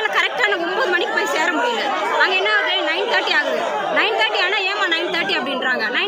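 Speech only: a woman talking, with other voices chattering over and around her.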